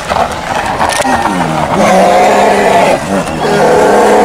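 Two brown bears roaring and growling at each other in a fight over food: loud, harsh calls that rise and fall in pitch.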